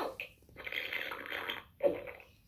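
LeapFrog Count Along Register toy playing a raspy electronic sound effect a little over a second long through its small speaker, between short bits of its recorded voice.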